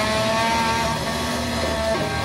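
Electric guitars holding long, steady sustained notes through amplifiers, the top note rising slightly in pitch.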